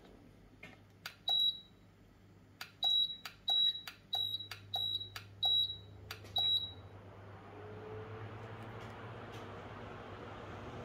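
About seven short high electronic beeps, each with the click of a button press, from about a second in until near the seventh second. Then an electric fan's air noise and motor hum swell as it speeds up, drawing about 40 W.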